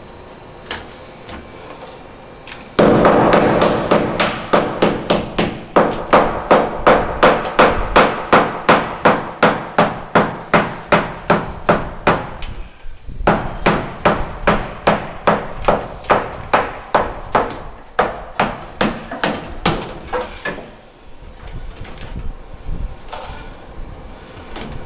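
Hammer driving a chisel into a tiled cement-plaster wall, chipping out tile and mortar: a long run of sharp metal blows at about three a second, with a short break about halfway and lighter taps near the end.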